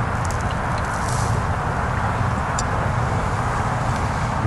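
A steady low rumble of background noise, with a few faint ticks in the first second.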